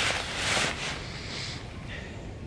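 Nylon hammock and down-filled fabric rustling as a person shifts about in the hammock, in a few swells that die down by halfway through.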